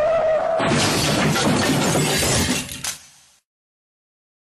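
Edited-in crash sound effect: a held, slightly falling tone breaks about half a second in into a loud shattering crash that lasts about two seconds, with a last sharp hit just before it fades out.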